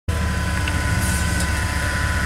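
Rock-crawling Jeep's engine running steadily at low revs, a low, even rumble.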